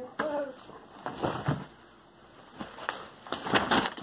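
Brown paper shopping bag rustling and crinkling in short bursts as the animals jostle it, about a second in and again near the end.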